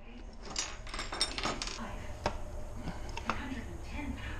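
Light metallic clinks and taps of engine parts and hand tools being handled, several short sharp clicks over a low steady hum.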